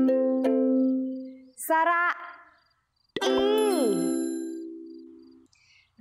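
A ukulele chord ringing out and fading over the first second and a half. Then a voice says 'sara ee', the 'ee' landing with a bright chime ding about three seconds in.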